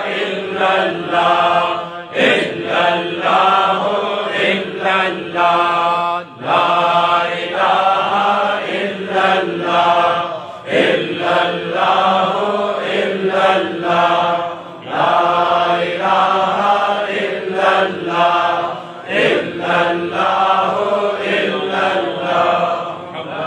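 A man's voice chanting an Islamic devotional recitation in long, melodic phrases of about four seconds each.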